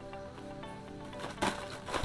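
Quiet background music with steady held notes. A couple of light knocks come near the end, as a cardboard box is handled.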